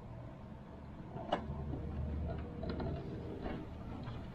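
Hands handling plastic wiring connectors, with light rustling and a single sharp click a little over a second in, followed by a few small ticks.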